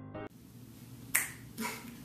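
A piano backing track stops just after the start. Then comes quiet room hiss with two short sharp clicks about half a second apart, the first the louder.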